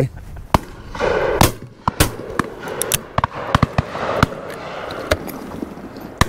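Shotgun shots on a driven game shoot: more than a dozen sharp reports in quick, uneven succession, a few loud and close, the rest fainter.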